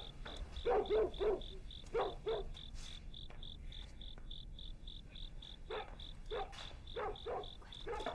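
A dog barking in short clusters of two or three barks, loudest about a second in and again near the end, over steady cricket chirping at about four chirps a second.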